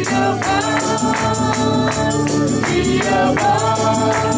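Gospel song sung by a man leading on microphone with other voices joining, over a steady tambourine beat.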